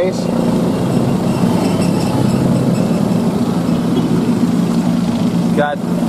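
Steady low drone of an engine idling, unchanging in pitch.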